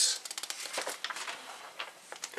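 Paper instruction booklet being handled and its pages turned, a dry crackling paper rustle.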